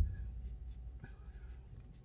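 A low thump at the start, then faint rubbing and a small click about a second in, over a low steady rumble in a vehicle cab.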